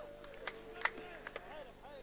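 Shouting voices of players on a football pitch, short scattered calls, with four or five sharp knocks among them.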